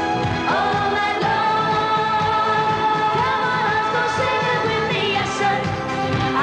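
Two women singing a Euro-disco pop song over band accompaniment, with long held notes and pitch glides.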